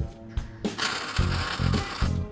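Background guitar music, joined just under a second in by the steady crackling hiss of an electric welding arc.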